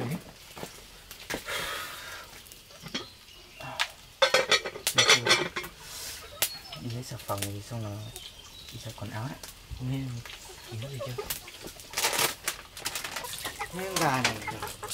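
Chickens clucking and cackling in a run of short, repeated calls, loudest about four to six seconds in.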